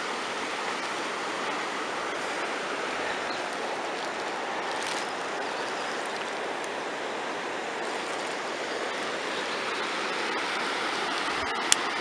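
Rushing mountain river running over rocks, a steady roar of white water heard from a suspension footbridge above it. A single sharp click sounds near the end.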